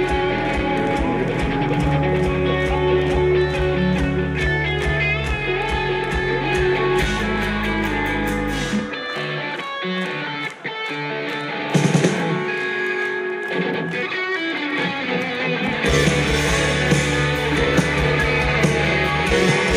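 Live rock band playing an instrumental passage led by electric guitars. The low end drops away about halfway through, then the full band comes back in near the end.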